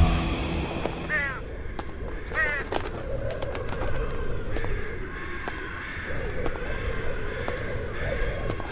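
A bird cawing twice, about a second apart, with harsh calls that fall in pitch, over a low steady background and faint sustained tones.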